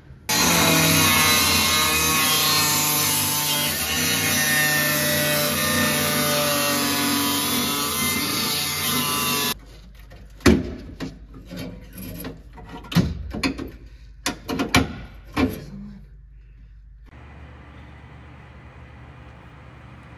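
A handheld power cutting tool running steadily as it cuts through the sheet-metal floor of a stripped Honda CRX, stopping abruptly about halfway through. Then a string of sharp metal knocks and clanks as the cut metal is handled, fading to a low steady hum.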